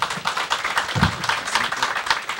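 An audience applauding, many hands clapping at once in a dense, even patter, with a brief low thump about a second in.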